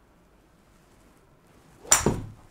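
A utility (hybrid) golf club striking a ball off a hitting mat: a single sharp crack near the end, with a brief ring after it.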